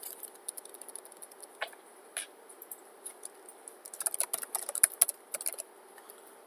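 Computer keyboard typing: a few scattered keystrokes, then a quick run of keys about four seconds in.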